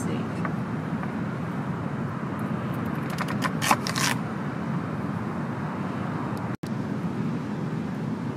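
Kitchen knife cutting through a crisp white radish on a wooden cutting board: a short cluster of sharp cuts about three to four seconds in, over a steady background noise.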